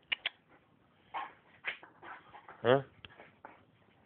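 A dog whimpering in short cries, with a few sharp clicks near the start.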